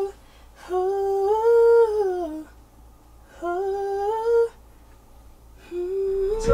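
A young man humming long held notes at a studio microphone: two hums, the first rising and then falling in pitch, the second rising, with a third starting near the end.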